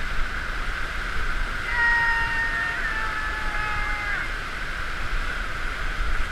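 Steady rushing of water pumped as a thin sheet over a FlowRider sheet-wave machine. A few drawn-out high-pitched tones sit over it for about two and a half seconds in the middle, slightly falling in pitch.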